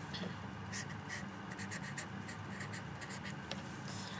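Marker pen drawing on paper in a run of short scratchy strokes, over a low steady hum.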